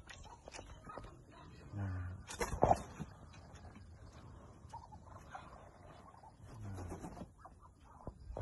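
Chickens and Muscovy ducks in a pen calling at a low pitch, twice, with a short loud burst of noise about two and a half seconds in.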